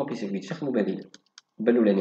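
Speech, broken about a second in by a short pause that holds a few quick, light clicks.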